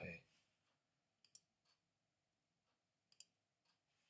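Two quick pairs of faint computer mouse clicks, about a second in and again about three seconds in, against near silence: double-clicks zooming in on a map.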